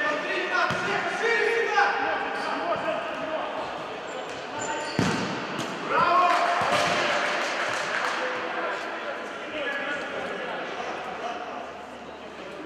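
Futsal ball being kicked and bouncing on a hard sports-hall floor, with players shouting to each other in a large echoing hall. About five seconds in there is a hard thud, followed by the loudest shouting.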